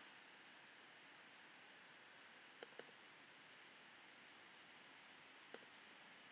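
Near silence with faint room noise, broken by computer pointer clicks: a quick double-click about two and a half seconds in and a single click near the end.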